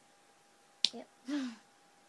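A single sharp click a little before a second in, the loudest sound here, followed straight away by a short spoken 'yep'.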